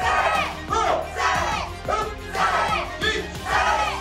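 A class of karate students shouting together with each punch, a group kiai repeated rapidly one after another, many voices of children and adults at once.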